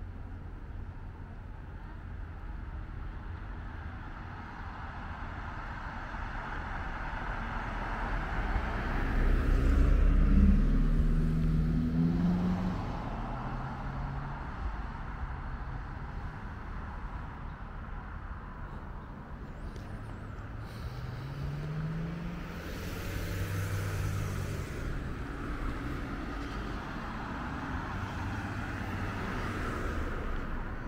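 Cars driving past on a street. The nearest passes loudest about ten seconds in, and another goes by with a shift in engine pitch a little after twenty seconds, over a steady traffic rumble.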